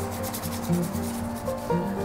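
Background music over a paper towel rubbing quickly across the surface of a small dyed wooden case. The scratchy rubbing is clearest in the first second.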